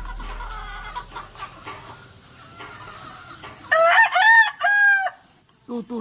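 A gamecock crowing once, loud, about two-thirds of the way through: a crow of a few rising and falling drawn-out notes lasting about a second and a half.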